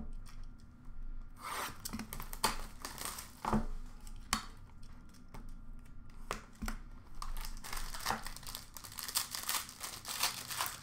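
Plastic wrapping being torn and peeled off a small cardboard trading-card box, with crinkling and a few sharp clicks and knocks as the box is handled and opened. The crackling gets denser near the end.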